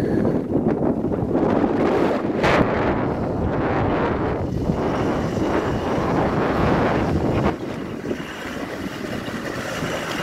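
Land Rover Defender 90's 300Tdi diesel engine running at low revs as the truck crawls over a tilted, rocky rut, mixed with wind buffeting the microphone. The sound eases off about three-quarters of the way through.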